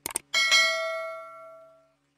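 Two quick mouse-click sound effects, then a bell ding that rings out and fades over about a second and a half: the notification-bell sound effect of a subscribe-button animation.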